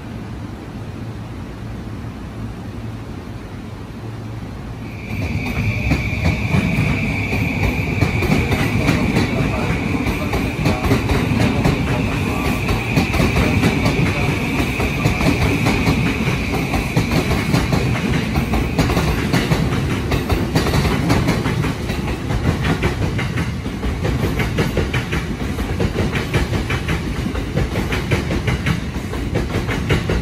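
JR 209 series 2200 (B.B.BASE) electric train running past close by, wheels clacking rhythmically over rail joints. About five seconds in the noise jumps up with a faint rising motor whine and a steady high-pitched whine that holds for about fourteen seconds before fading.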